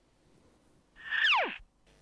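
A short swoosh sound effect for a graphic transition, about a second in, its pitch sliding quickly downward over about half a second.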